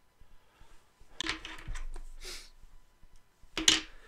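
Hand handling noises at a fly-tying bench, consistent with stripping fluff fibres off a grizzly hackle feather. After a quiet first second come a few short rustles and scrapes, and a brief, sharper scrape near the end is the loudest.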